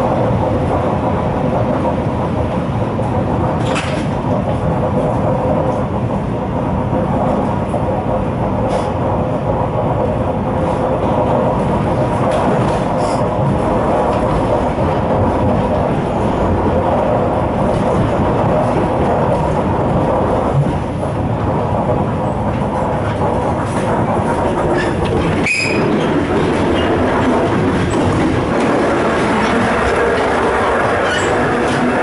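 Carriage of an ER2K electric multiple unit running along the track, heard from inside: a loud, steady rumble with an even hum and a few sharp knocks.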